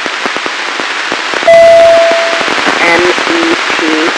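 Hissing, crackling FM radio static from a weak amateur satellite downlink signal. About one and a half seconds in, a single steady beep sounds for about a second, and a voice starts coming through near the end.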